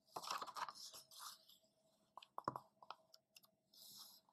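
Pages of a paperback picture book being turned by hand: a soft paper rustle in the first second or so, a few light clicks and taps around the middle, and another brief rustle near the end.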